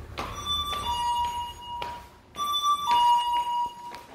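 Electronic two-note chime, a higher note stepping down to a longer lower one, sounding twice about two seconds apart, with a few clicks of high-heeled sandals on a tiled floor between.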